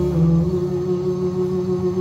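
Acoustic dangdut song on guitar and male voice, the singer holding one long steady note over the guitar that fades out just at the end.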